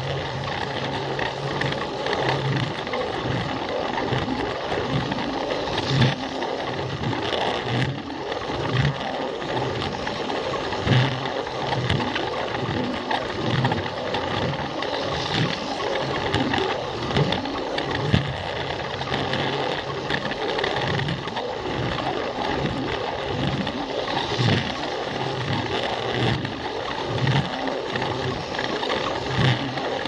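Battery-powered Plarail toy train's small motor and plastic gearbox running steadily, heard from a camera riding on the train, as it rattles along the plastic track with a few louder knocks.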